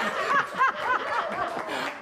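A woman laughing in a quick run of short pulses, about three a second.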